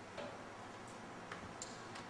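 A few faint, short ticks of a marker pen writing on a whiteboard, spread unevenly over two seconds.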